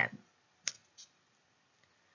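Two short clicks, the first sharp and the second fainter, about a third of a second apart, then near silence.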